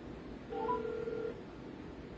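An electronic telephone tone about half a second in: two quick rising blips over a steady beep that lasts under a second and then stops, against faint background hiss.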